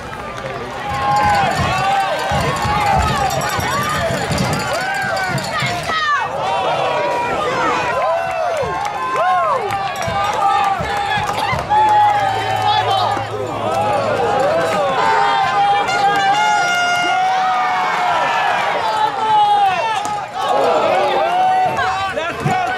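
Spectators at a ballgame talking and calling out, many voices overlapping so that no single one stands clear.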